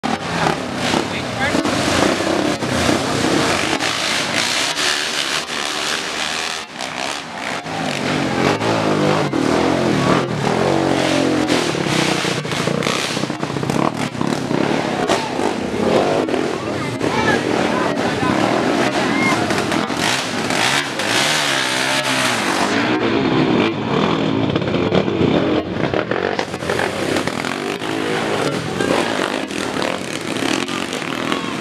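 Dirt bike engines revving up and down, mixed with the voices of a crowd of spectators.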